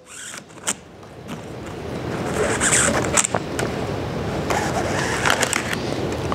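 Steel BOA lace cable being pulled out through a snowboard boot's plastic lace guides: a continuous scraping rasp of wire sliding through plastic that builds about a second and a half in, with a few sharp clicks.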